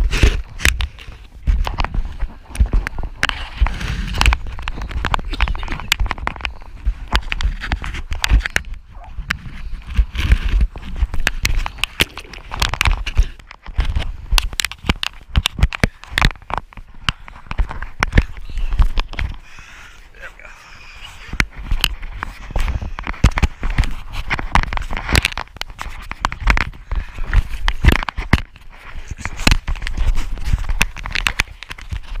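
Seawater splashing and slapping around a surfboard and against a waterproof camera housing, with wind on the microphone: a dense run of sharp crackles and knocks over a low rumble.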